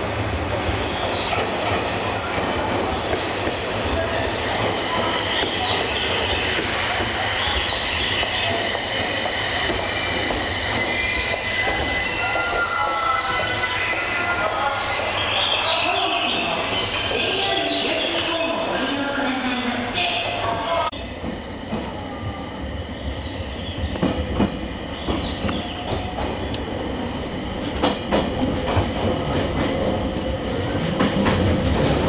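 Electric commuter train pulling into a station, with steady running noise and high-pitched wheel squealing as it slows to a stop. About two-thirds of the way through, the sound cuts to a train starting off: quieter running with a few clicks from the wheels over rail joints.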